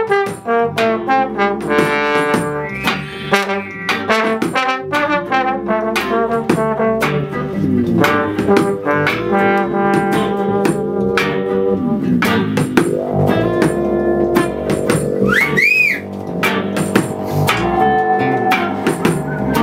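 Live band playing an instrumental passage, a trombone carrying the lead over keyboard accompaniment. Sliding notes come in the middle, and a brief high swooping tone rises and falls near the end.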